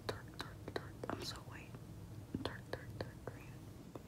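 Soft, close breathy mouth and whisper-like sounds with a string of faint, sharp clicks, about ten spread unevenly over four seconds.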